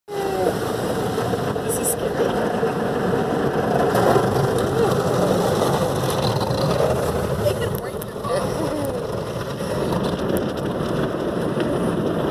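Automatic car wash heard from inside the car: water and soapy foam spraying and washing over the windshield and windows, a steady loud rush of noise.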